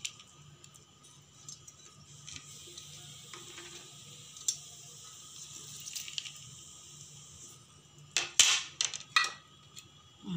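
Lemon juice faintly dripping and trickling from a hand-held metal lemon squeezer into a steel jar of chutney herbs, with a few small ticks. Near the end come several loud knocks as the squeezer is handled and taken away.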